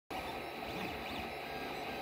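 FDM 3D printer running mid-print: a steady fan hiss with faint stepper-motor whines rising and falling as the print head moves.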